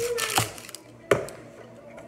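Dry red onion skin crackling as it is peeled off by hand, then one sharp knock on a wooden cutting board about a second in.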